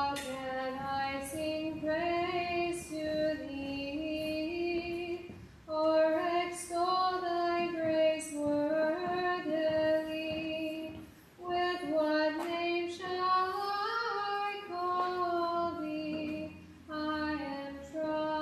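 A woman's voice chanting a hymn unaccompanied, in sung phrases of about five to six seconds with short breaks for breath between them.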